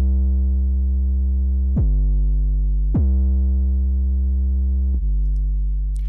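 Soloed sub bass sample played from the Waves CR8 software sampler: deep held notes, struck four times, each opening with a quick downward pitch drop before settling into a steady low tone. The sample loops to sustain each note, and the last one fades slowly.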